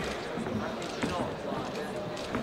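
Men shouting instructions and encouragement at ringside during ground grappling, over a few dull thumps from the fighters on the ring mat.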